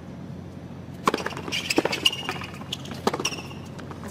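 Tennis serve and rally on a hard court: sharp racket-on-ball hits, the first about a second in, with ball bounces and short, high shoe squeaks between the shots.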